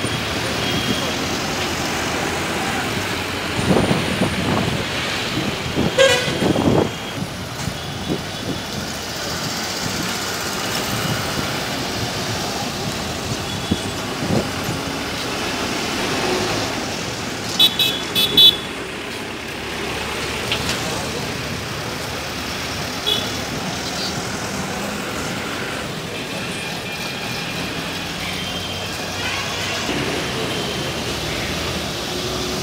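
City street traffic with buses driving past, engines running, and horns honking in short blasts, loudest as a quick series of toots about two thirds of the way through.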